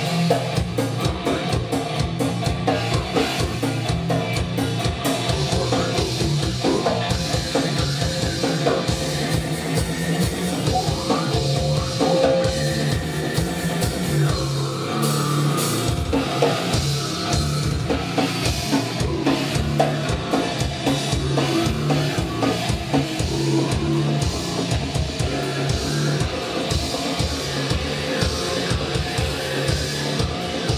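A grind band playing live at full volume: fast, dense drumming with bass drum, under heavy metal guitars and bass.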